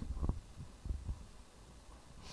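Soft, low thumps of a handheld microphone being handled, near the start and again about a second in, over a steady low hum.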